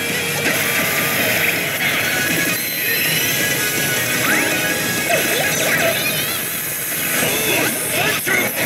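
Oshi! Bancho 3 pachislot machine playing its game music and electronic sound effects during a reel-spin animation, over the constant din of a pachinko hall.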